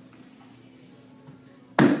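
Quiet room tone, then near the end one sharp, loud thump of a hand coming down on a wooden floor, with a man's voice starting just after.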